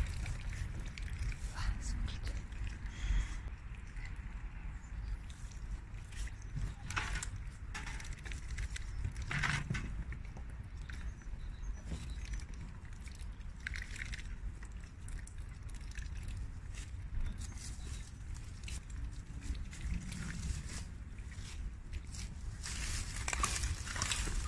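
Rustling and scattered crackles of dry leaves, twigs and rotten wood as a dog roots through a brush pile along a fence and logs are shifted by hand, over a steady low rumble.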